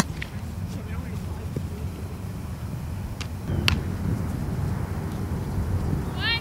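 Two sharp knocks from softball fielding practice: a loud crack right at the start and a second knock about three and a half seconds in, over a steady low outdoor rumble.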